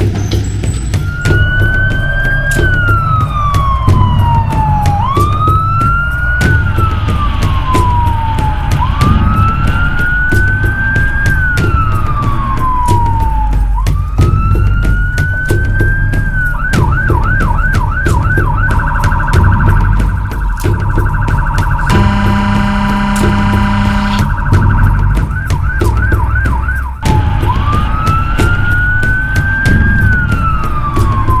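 Fire rescue truck's electronic siren heard from on board as the truck drives: slow rising-and-falling wail cycles of about four seconds each, switching to a fast yelp partway through, then a steady tone with a horn blast, yelp again, and back to the wail. The truck's engine runs underneath throughout.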